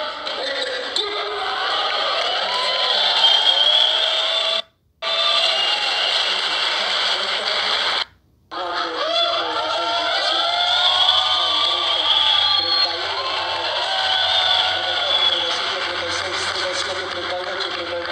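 An audience of many overlapping voices talking and calling out at once in a hall. The sound cuts out twice briefly, about five and eight seconds in.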